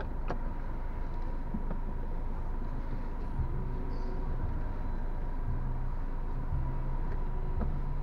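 Car engine idling, heard from inside the stationary car's cabin as a steady low hum with a faint steady high tone; from about three seconds in, a deeper hum comes and goes in uneven steps.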